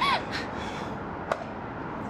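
A woman crying: one short, high sob that falls in pitch at the start, then a fainter breath. A single sharp click comes a little past halfway.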